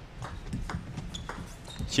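Table tennis ball in a doubles rally, a quick irregular series of sharp clicks as it is struck by the paddles and bounces on the table.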